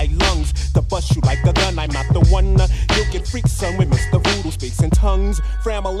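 1990s boom-bap hip hop track: a rapper delivering verses over a heavy bass line and a steady drum beat.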